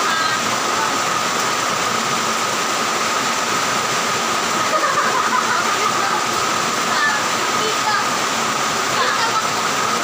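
A steady, loud hiss with a constant high-pitched hum running through it, with faint voices talking now and then underneath.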